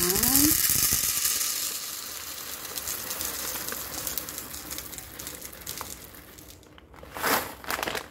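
Dried azuki red beans poured from a plastic packet into a plastic measuring cup: a dense patter of beans, with the packet crinkling, loudest at first and thinning out over several seconds. A brief louder rustle of the packet comes near the end.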